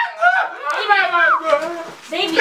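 Speech only: a raised, high-pitched voice crying out in short bursts, with a falling cry a little past the middle.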